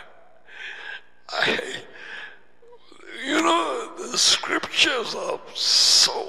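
A man's voice: a few breathy, gasping puffs of laughter, then voiced talk from about halfway through.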